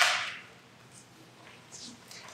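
Sharp crack of a large priest's communion wafer being snapped in two at the fraction of the Eucharist, fading over about half a second, with a fainter crackle near the end.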